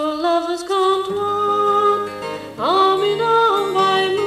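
Folk song: a woman's clear voice holding long notes over simple acoustic guitar backing, sliding up into a new held note about two and a half seconds in.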